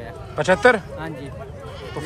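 A goat bleating once, short and quavering, about half a second in.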